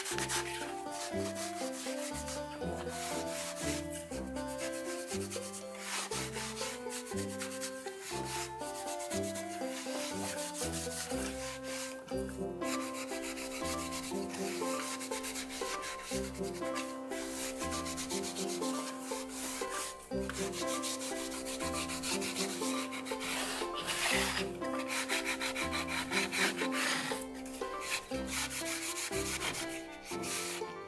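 Cotton rag rubbed back and forth over a distressed wooden sign, wiping dark stain into the painted boards, with a scratchy swishing hiss. Background music with a melody plays under it.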